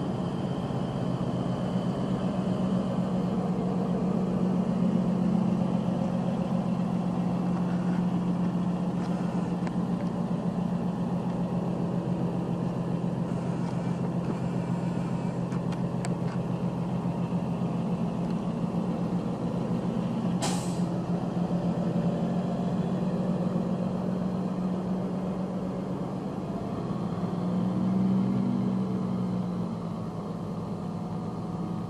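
A 1988 International 8300's diesel engine running steadily under load, driving the hydraulic hoist as the end-dump trailer's box rises. A short sharp hiss of air comes about twenty seconds in.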